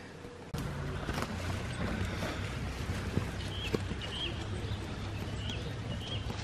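Steady low wind rumble on the microphone, with a bird giving a few faint, short, high chirps in the second half.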